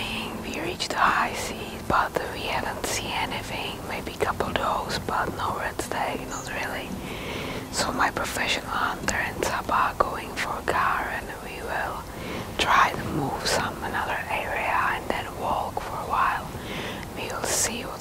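Whispered speech: a person talking in a low whisper, continuing throughout.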